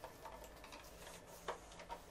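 A few faint, sharp plastic clicks and taps from hands working the tubing and push-fit connectors inside a water purifier.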